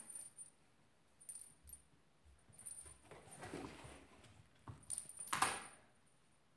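Light metallic jingling in short bursts from the small metal ring on a pompom cat toy as it is shaken and batted, with scuffling and knocks of a cat scrambling in a cardboard box; the loudest scramble comes near the end.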